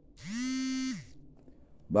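A man's drawn-out vocal hesitation sound, a single held 'eeh' of about a second that slides up in pitch, holds steady, then slides back down.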